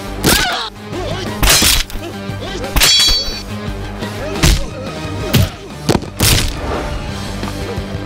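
Dubbed film fight sound effects: several loud, sharp punch and crash impacts over background music. One hit about three seconds in has a brief high ringing tail, like something metallic or breaking.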